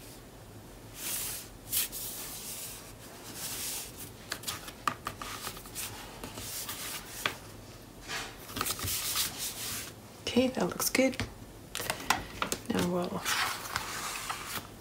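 Paper and cardstock being handled: irregular rustling and rubbing strokes with a few sharp taps, then a voice after about ten seconds.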